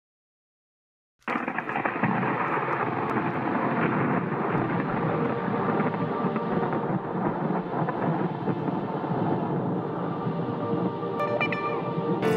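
Thunderstorm sound effect: a steady rumble of thunder and storm noise that starts suddenly about a second in.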